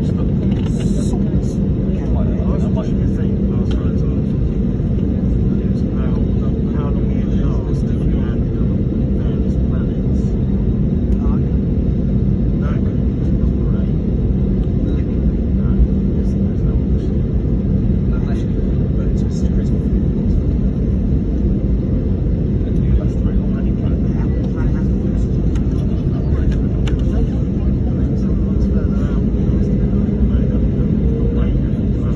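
Airliner cabin noise while taxiing: a steady, loud low rumble of the engines and rolling aircraft with a constant hum, heard from inside the cabin.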